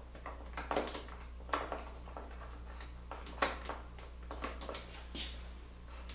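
Light, scattered clicks and knocks of small wooden blocks being handled and set against an aluminium extrusion fence, about eight in all, over a steady low hum.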